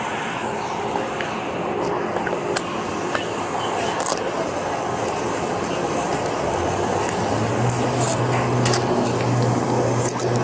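Steady roadside traffic and idling-vehicle noise. A low engine hum comes in about seven seconds in and holds.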